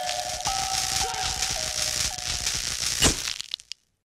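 Short electronic logo sting: a few held synth notes stepping in pitch over a crackling static hiss, then one loud hit about three seconds in before it cuts off suddenly.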